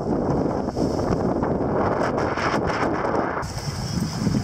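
Wind buffeting the microphone in a steady low rumble, over small waves washing onto a pebble beach.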